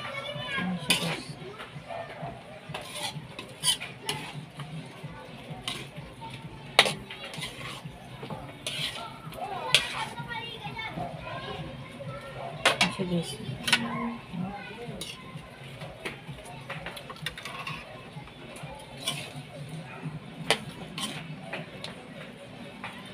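A metal spoon stirring thick sauce in an aluminium frying pan, with irregular sharp clinks and scrapes as it knocks against the pan, a few of them loud. Voices and children can be heard in the background.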